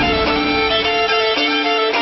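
Violin playing the melody of an instrumental passage, held bowed notes changing about a third of the way through, with the bass and drums falling away beneath it as it begins.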